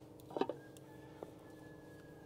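Faint sounds of a wooden rolling pin rolling out thin dough on a stone rolling board, with a couple of soft brief clicks.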